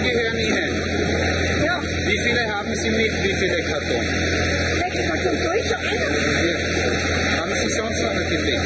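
Several people talking over one another, with a steady low engine hum underneath.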